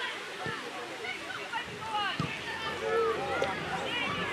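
Children's voices calling and shouting to each other across a football pitch, faint and distant, in short high-pitched calls.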